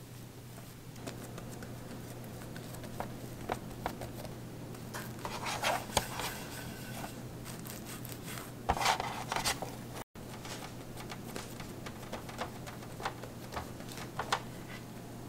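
Hands pressing and rolling soft bread dough on a bamboo cutting board: soft rubbing and light patting with scattered small clicks, and two louder stretches of rubbing about five and nine seconds in.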